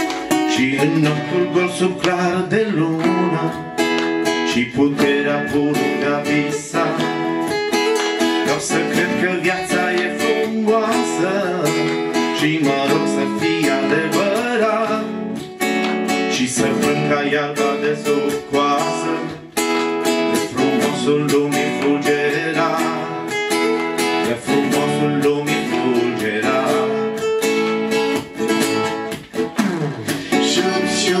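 Two acoustic guitars strummed and picked together in a song.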